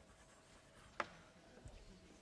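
Writing on a board in a small lecture room: one sharp tap about a second in and a few faint knocks later, otherwise near silence.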